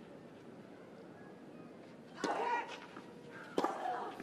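Tennis ball struck by a racket twice on a clay court with the crowd hushed: once about two seconds in, followed by a short vocal sound, and again near the end.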